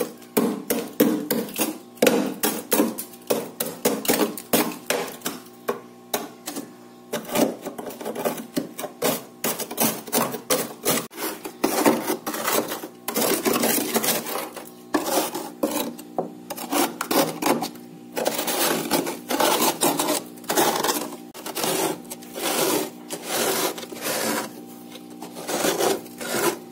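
Metal spoon scraping thick frost off the walls of a freezer compartment in quick, irregular rasping strokes, several a second, with short pauses between bursts.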